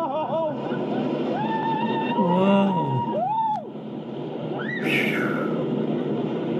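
Roller coaster riders letting out wordless rising-and-falling cries over a steady rush of wind and train noise as the coaster runs through its turns. The last cries, near the end, are higher-pitched.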